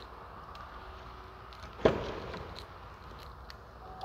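Quiet indoor room tone with faint footsteps, and one sharp knock about two seconds in that rings briefly.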